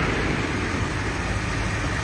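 Steady low rumble of motor vehicles, with no distinct events.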